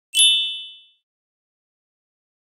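A single bright, high chime sounding once and ringing away within about a second: the opening sting of an animated video intro.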